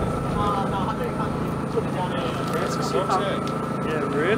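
Indistinct background voices over a steady low mechanical hum, with a thin steady high whine running under it.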